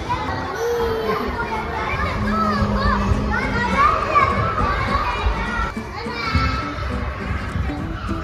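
Many children's voices calling, squealing and chattering at play in a busy indoor play area.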